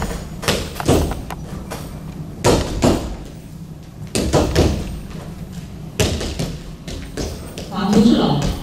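Feet stamping and landing on a padded mat during a Bak Mei kung fu form: irregular sharp thuds, one every half second to second and a half, with the rustle and snap of clothing on the strikes.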